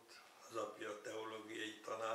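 Only speech: an elderly man talking in Hungarian.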